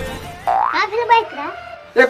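A comic cartoon-style sound effect: a quick rising 'boing'-like glide followed by a high, wavering, warbling tone, after the tail of background music fades out.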